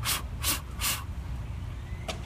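Three quick, forceful breaths or snorts close to the microphone, about 0.4 s apart in the first second, over a low steady rumble.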